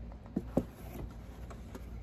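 Two light knocks about half a second in, from hands handling a cardboard box and the small cup inside it, over a steady low background rumble.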